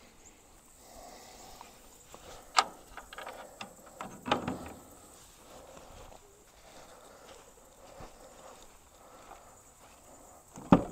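A sharp click about two and a half seconds in and a short run of knocks and rattles a second or two later, then faint rustling footsteps.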